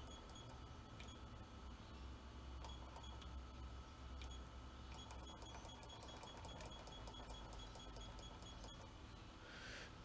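Near silence: faint room hum with a few soft clicks from the keypad buttons of a Power One Aurora solar inverter, pressed one after another while setting the date.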